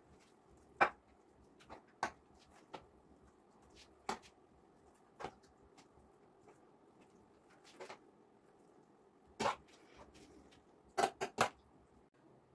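Metal serving spoon clicking and tapping against a metal baking tray while scooping and spreading minced-meat filling into eggplant halves: scattered sharp clicks, the loudest about a second in and three in quick succession near the end.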